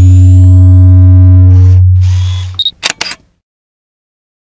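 Intro sound effects: a loud, deep hum with steady tones layered over it, fading out about two and a half seconds in, then a short high beep and a camera shutter clicking twice.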